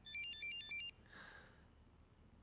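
Mobile phone ringtone: a quick electronic melody of high beeping notes lasting just under a second, then stopping. The call is going unanswered.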